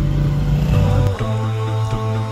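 Low rumble of car engine and road noise inside the cabin, cut off about a second in by a vocal-only nasheed with long held notes.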